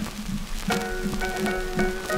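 Instrumental introduction on an early acoustic-era 1904 Pathé disc recording, starting about two-thirds of a second in with short, sharply attacked notes after a moment of hiss and crackle from the disc surface.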